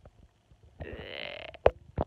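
A woman's drowsy, croaky groan ("уэ"), about a second long, starting partway in, followed shortly by a single sharp click.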